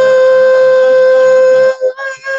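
A man sings one long, high held note into a handheld microphone. The note wavers slightly at first, then holds steady, and breaks off near the end.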